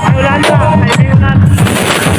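Loud electronic dance music played through a large stacked street sound system of bass cabinets and horn speakers. It has a heavy, pulsing bass line and sharp hits about every half second.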